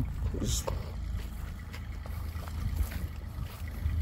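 Wind buffeting the microphone outdoors: a steady low rumble with a few faint clicks.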